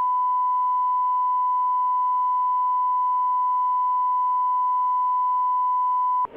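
Steady 1 kHz line-up tone: a single pure beep held unchanged at one level, the reference signal on a broadcast programme feed.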